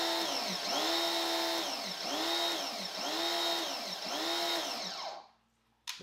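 Small electric pressure washer's motor and pump running in surges while spraying, the pitch rising and falling about once a second, then stopping about five seconds in. The washer will not hold a steady pressure with its stock nozzle, which the owner suspects is a built-in fail-safe, perhaps reacting to back pressure.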